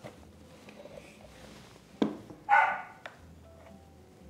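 Lid of a Vitamix blender container being pulled off: a sharp click about two seconds in, then, half a second later, a short, loud, high squeak.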